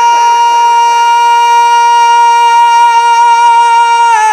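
A male naat reciter holds one long, high sung note into a microphone, loud and steady in pitch.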